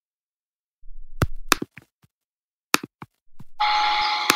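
Silence, then a handful of short, sharp clicks about a second apart. Near the end a steady hiss with one held tone begins.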